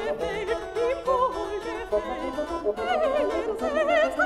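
A solo soprano singing with wide vibrato over a small baroque orchestra, from a 1957 LP recording. Short plucked notes under the voice point to a harpsichord continuo.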